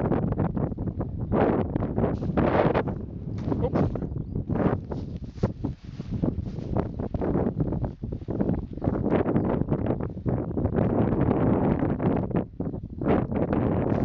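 Wind buffeting the microphone, with a birch-twig broom repeatedly swishing and slapping against burnt, smouldering grass as the fire is beaten out.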